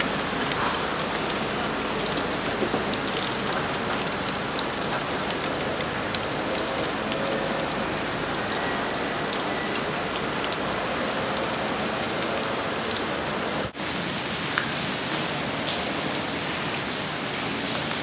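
Steady rain falling on wet concrete and puddles: a continuous hiss scattered with small drop ticks. The sound breaks off for an instant about fourteen seconds in.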